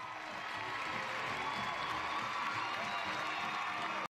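Theatre audience applauding and cheering, building over the first second and then holding steady.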